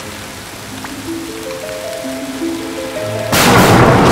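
Steady rain with an eerie music line of notes climbing step by step, then a loud clap of thunder a little over three seconds in.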